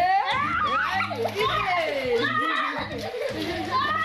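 Children shouting and squealing excitedly as they play in an inflatable paddling pool, with water splashing underneath.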